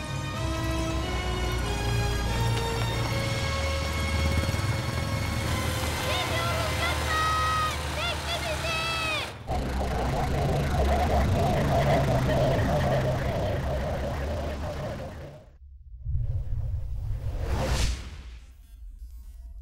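Film soundtrack: melodic background music with a run of quick chirping figures, cut off abruptly about nine seconds in by a steady rushing noise that drops away briefly near the end and swells back up.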